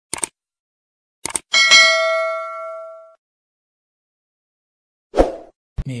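Subscribe-button animation sound effects: a couple of short mouse clicks, then a bright bell-like ding that rings for about a second and a half and fades away. A short thump follows just after five seconds.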